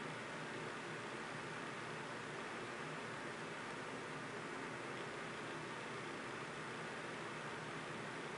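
Faint steady hiss of background noise, with no distinct sounds standing out.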